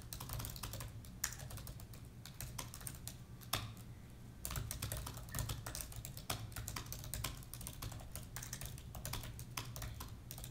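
Continuous typing on a laptop keyboard, a quick run of key clicks with a short pause a little before halfway, and two sharper key strikes standing out in the first half.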